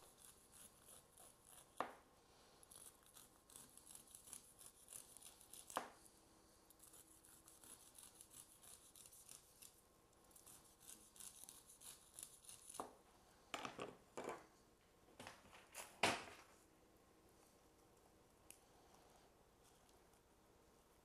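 Chef's knife cutting kernels off a roasted ear of corn on a plastic cutting board: faint rasping, scraping strokes. A few sharper knocks come through, the loudest about sixteen seconds in.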